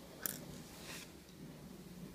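Faint handling of a tiny plastic N scale locomotive truck and its wheelset in the fingers: a small sharp click about a quarter second in, then a short scrape near the one-second mark.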